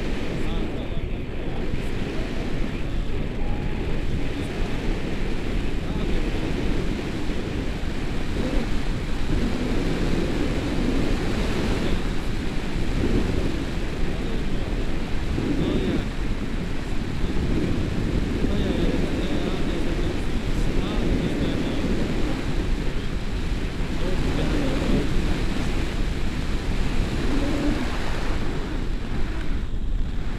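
Wind rushing over the action camera's microphone in flight under a tandem paraglider: a steady, low rumbling rush of airflow.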